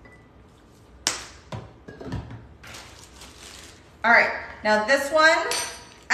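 Kitchen items handled on a countertop: a sharp click about a second in, a few light knocks, then about a second of rustling, followed by a woman speaking briefly.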